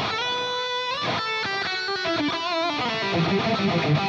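Overdriven electric guitar through a Fractal Axe-FX II modelling a Mesa Boogie Mark IIC++ amp, pushed by a Tube Screamer-style T808 OD boost, playing a lead phrase. It opens on a long held note, moves through several notes with vibrato, then goes into a quicker run of lower notes, with dotted-eighth ping-pong delay and plate reverb behind it.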